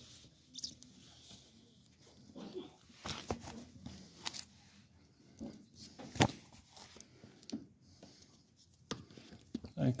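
Books being handled on a library shelf: irregular clicks and rustles as plastic-jacketed graphic novels are touched and shifted, with one sharp tap about six seconds in.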